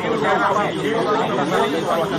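Several recordings of a man talking overlap at once, a jumble of voices in which no single line of words stands out.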